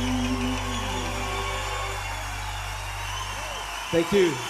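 Live band music ending: a final held chord dies away and the low bass stops shortly before the end.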